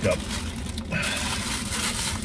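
Rustling handling noise starting about a second in as something is picked up, over a steady low hum of the truck cab.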